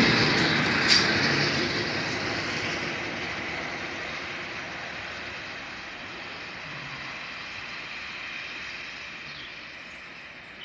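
A passenger train hauled by two English Electric Class 50 diesel locomotives moving away along the track, its wheel and engine noise fading steadily into the distance.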